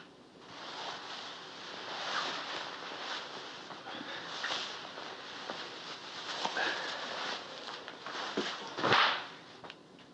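Clothing rustling as a jacket is pulled off someone's arms, in a run of uneven swishes and small scuffs. The loudest swish of fabric comes near the end.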